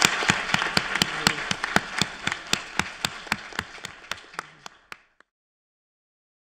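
Audience applauding, with one clapper close to the microphone standing out at about four claps a second. The applause fades and cuts off about five seconds in.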